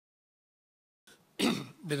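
Dead silence for about the first half, then a man clears his throat once, loudly and briefly, just before he starts to speak.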